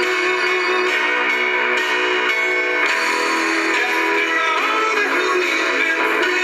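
Music from an FM radio station playing through the truck's speakers inside the cab, thin with little bass.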